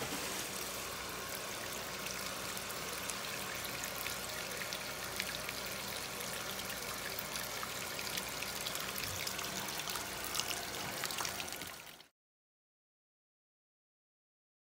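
Water pouring steadily from the fill inlet of a Panda PAN56MGW2 portable washing machine into its tub onto wet laundry, the machine filling at the start of a quick-wash cycle. The rush of water cuts off suddenly near the end.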